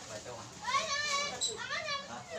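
A child's high-pitched voice calling out in two sing-song phrases, starting about half a second in.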